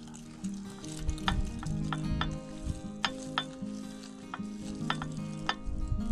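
Dried chili pepper pieces sliding off a ceramic plate and dropping into a spice grinder's cup, a dry crackling rattle with many sharp clicks scattered through it.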